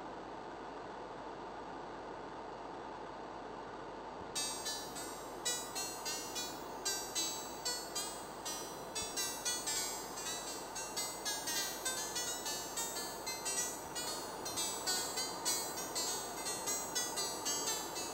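Computer-generated music from a ChucK program: a steady synthesized noise hiss, joined about four seconds in by a rapid stream of bright, plucked-sounding synthesized notes, roughly three a second, in a random arpeggio over the hiss.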